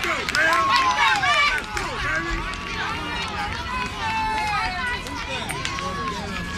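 Several voices shouting and cheering at once from the sidelines of a football game, with high-pitched yells overlapping, busiest over the first two seconds and then continuing.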